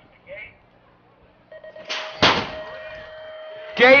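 BMX race start: a steady electronic start tone sounds and, about two seconds in, the metal starting gate drops with a single loud clang.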